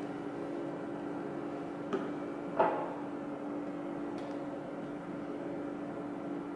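Bottles being handled and set down on a tabletop: a small click just under two seconds in, then a louder knock, over a steady low hum.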